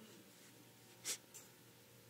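Near silence in a pause between sentences, broken by one brief breath about a second in.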